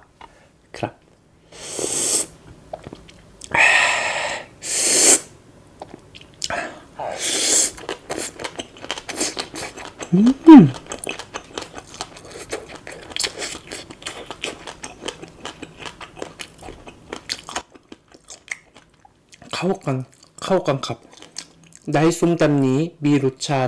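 Close-miked chewing of crunchy shredded green papaya salad, a dense run of small wet crunches. There are several louder noisy bursts in the first few seconds and a brief hummed "mm" about ten seconds in.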